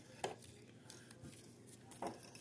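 Faint handling of a stack of trading cards, with one light click about a quarter second in and a few softer ticks after it.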